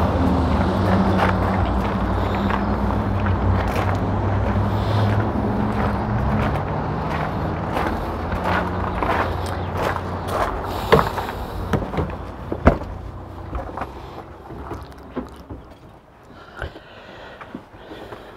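A motor running steadily with a low hum. Its pitch shifts about a third of the way in, and it fades away over the last few seconds. Footsteps and two sharp knocks come about two-thirds of the way in, as someone climbs into the motorhome.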